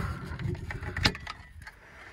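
Handling noise inside a car as parts are moved about: a low rustling rumble at first, then a single sharp knock about a second in.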